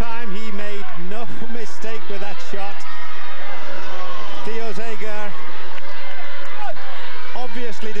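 Speech: a television commentator talking over a soccer match broadcast, with a steady noisy background beneath the voice.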